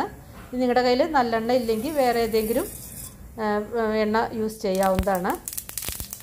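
A woman talking, then near the end mustard seeds hit hot oil in a steel pan and begin sizzling and crackling: the start of a tempering.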